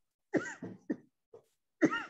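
A woman coughing in a string of about five short, separate coughs, a choking fit that has cut off her talking.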